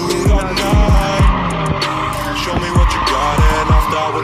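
Hip-hop beat with repeated deep, booming bass-drum hits, over a steady screech of car tires sliding on paving as the car drifts in circles.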